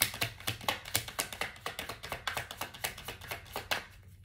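Tarot cards being shuffled by hand: a quick, irregular run of papery taps and slaps, several a second, stopping shortly before the end.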